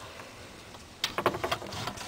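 Handling noise inside a reptile enclosure: a quick run of light clicks and rattles starting about a second in, as a hand reaches in after the lizard.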